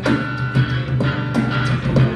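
Guitar played in an instrumental passage of a rock song, with strummed chords about every half second over a steady low bass note.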